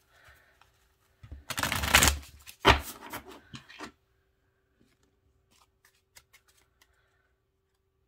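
A deck of oracle cards being shuffled by hand. A loud riffle of cards comes about a second and a half in, followed by a sharp slap of the deck. After that there are only faint scattered card ticks.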